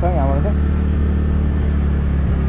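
Motorcycle engine running at a steady cruise, one even low hum, with road and wind noise from riding. A brief bit of voice at the very start.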